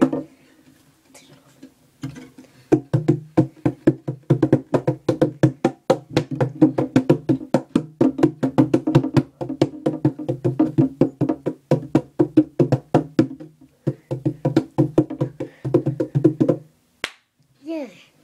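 Acoustic guitar body tapped with the hands like a drum: a fast, busy run of hollow knocks over a steady low ring. The tapping starts a couple of seconds in, breaks off briefly a little after the middle, picks up again and stops shortly before the end.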